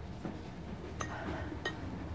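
Two light clinks, about a second in and again just past the middle, from a pestle knocking in a mortar while something is crushed.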